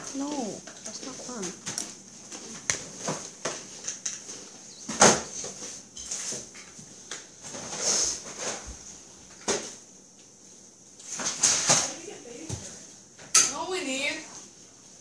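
Grocery packages being handled and set down on a tile floor: scattered short knocks and clicks of boxes, cans and bottles, with bursts of crinkling packaging. Quiet voices come in now and then.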